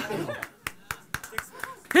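A few people clapping sparsely: about half a dozen separate, sharp handclaps over a second and a half, without building into full applause.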